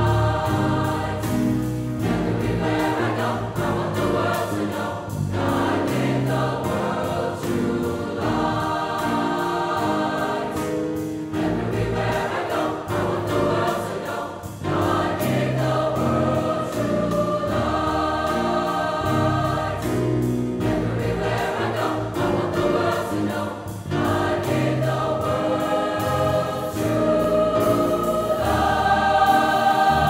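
Large mixed choir of high-school voices singing sustained chords with piano accompaniment. The sound swells louder near the end.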